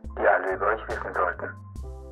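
A voice speaking for about a second and a half over background music of held chords and a low bass line; the music carries on alone after the voice stops.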